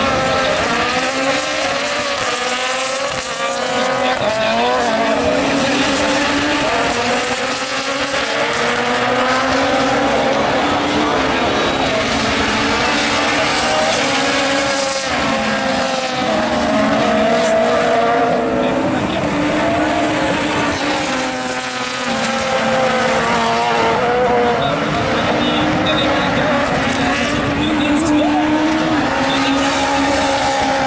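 Super 1600 rallycross cars racing, several engines revving up and dropping back through gear changes and corners, their pitches overlapping and rising and falling all through.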